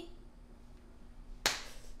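A single sharp click about one and a half seconds in, against quiet room tone.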